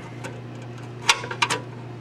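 Screwdriver tip clicking against the metal flanges of a 3/4-inch knockout plug in an electrical panel as the flanges are pried out: a few sharp clicks in quick succession about a second in.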